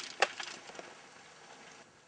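Mountain bike clattering on a rough descent: one sharp, loud knock about a quarter second in, a few lighter rattles after it, then the noise dies down.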